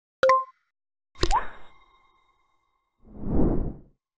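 Outro transition sound effects: a short pop, then about a second later a bright ding that rings on briefly, and near the end a whoosh that swells and fades.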